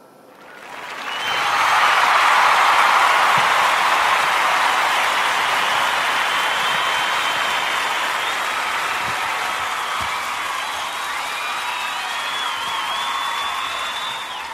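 Crowd applause that swells in over the first two seconds, holds steady, and begins to fade near the end, with a few thin, wavering, high whistles in the last few seconds.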